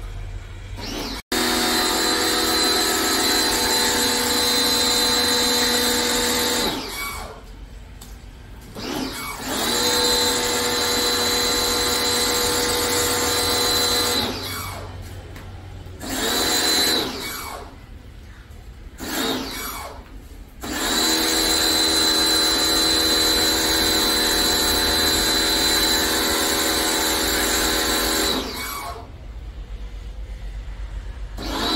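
Portable electric pressure washer spraying foam. Its motor whines in runs of several seconds while the trigger is held, and it spins down and stops between runs: three long runs and one short one.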